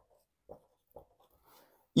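Dry-erase marker writing on a whiteboard: faint, short scratchy strokes, about one every half second, with a softer stretch of scratching near the end.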